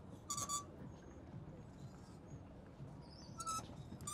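Clothes hangers sliding along a metal garment rack rail, giving two short, high squeaky scrapes: one just after the start and one near the end. A low background rumble runs underneath.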